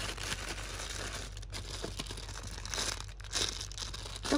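Clear plastic bags crinkling and rustling as a bagged squishy toy is picked up and handled among other bagged toys in a cardboard box.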